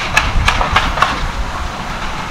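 Background construction noise: a steady low rumble with a run of sharp clicks and clatter, a few a second.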